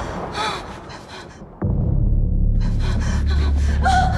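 A woman's short, frightened gasping breaths that fade away, then a sudden deep low drone of horror-trailer sound design starting about a second and a half in, with quick pulses of hiss over it.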